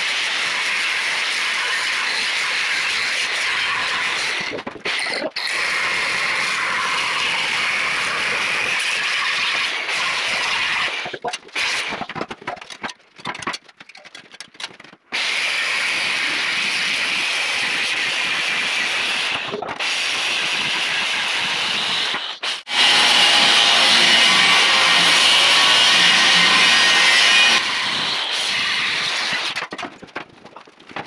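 Angle grinder with a thin cut-off (wafer) wheel cutting through five-inch steel tubing, a steady grinding hiss in several long runs with short breaks between cuts. The loudest stretch comes near the end.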